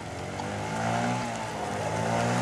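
Small motor scooter engine running as the scooter rides toward the listener, growing steadily louder.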